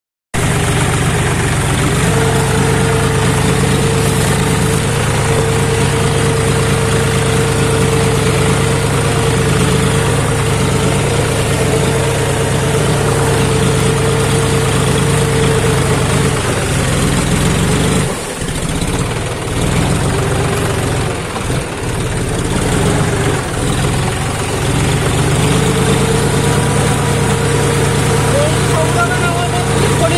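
A John Deere tractor's diesel engine running steadily under load, with the rear tyre churning through mud and splashing water. The engine sound dips and wavers for several seconds about two-thirds of the way through, then steadies again.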